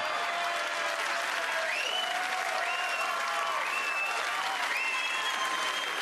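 Audience applauding steadily after a punchline, with a few high cheers rising over the clapping.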